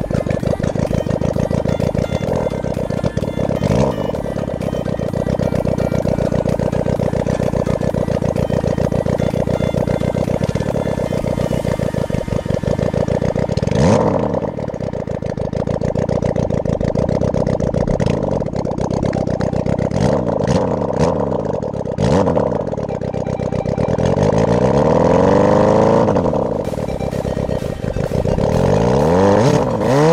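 A go-kart's 600 cc Suzuki four-cylinder motorcycle engine running under way, its revs rising and falling several times, most often in the second half. Music plays underneath.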